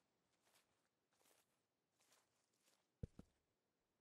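Near silence with a few faint soft rustles, then two soft footstep thumps close together about three seconds in.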